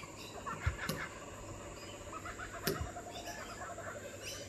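Kookaburras calling to each other from a tree: a run of soft, rapid chuckling notes in the second half, with a couple of sharp clicks.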